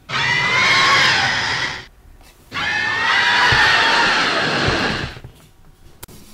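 Two long, screeching monster roars with a short gap between, the second a little longer.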